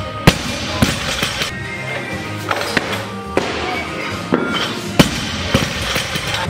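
Background music with a beat, and about a quarter second in a loud, sharp crash: a loaded barbell with bumper plates dropped from overhead onto lifting blocks. Further sharp knocks come through the music, the strongest about five seconds in.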